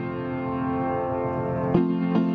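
Instrumental hymn accompaniment, no voices: a chord held, then new notes struck near the end as the next verse begins.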